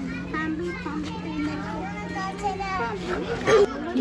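Children and other visitors chattering and calling out, several voices overlapping, over a steady low hum that cuts off near the end.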